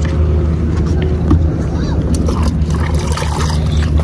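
Steady low drone of a boat engine running.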